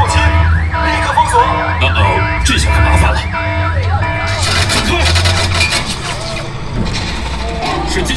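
Dark-ride show audio: an alarm siren wailing up and down about twice a second over a bass-heavy music score, giving way about four seconds in to a noisy, crackling burst of battle effects.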